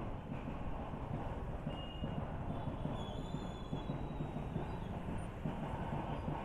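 Motorcycle riding slowly through busy street traffic: steady engine and road noise with wind buffeting the microphone, and faint high tones, such as a distant horn, around two to three seconds in.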